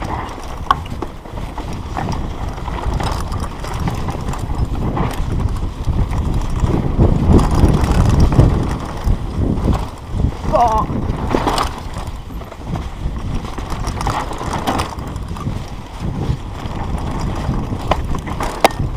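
Mountain bike descending a dry dirt trail, heard from a camera riding with the bike: rolling tyre noise on loose dirt, rattles and knocks from bumps, and rushing wind on the microphone. It grows louder for a few seconds past the middle as the speed picks up.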